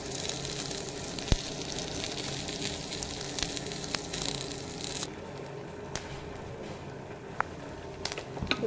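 Chopped coconut, curry leaves, dried red chillies and lentils sizzling as they roast in oil in a pan, with a few sharp clicks. The sizzle thins out about five seconds in.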